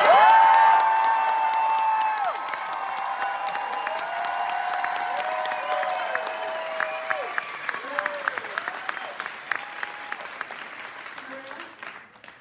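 Theatre audience applauding and cheering, with long held whoops above the clapping. It is loudest at the start, then slowly dies away until only scattered claps are left near the end.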